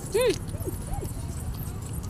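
A young child's short high-pitched vocal call, rising and falling, about a quarter-second in, followed by two fainter short calls, over steady low background rumble.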